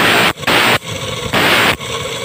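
A hand file sharpening the teeth of a handsaw. There are three loud rasping strokes, about half a second each, with softer scraping between them.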